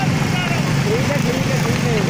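Small motorcycle engine running steadily at low revs, with wind noise on the microphone; a voice calls faintly in the background.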